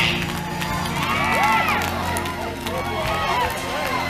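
Live gospel music with sustained low notes held underneath, and scattered shouts and whoops from the congregation.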